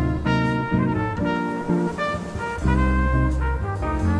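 Big band jazz instrumental, with the brass section (trumpets and trombones) playing short, punchy chords over a bass line.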